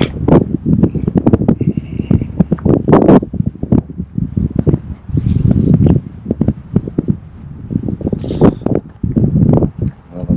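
Irregular low rumbling and thumps from wind buffeting and handling noise on a handheld camera's microphone while walking over grass.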